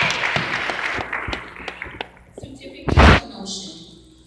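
Congregation applause with scattered hand claps dying away over the first two seconds, followed by a single short, loud thump about three seconds in.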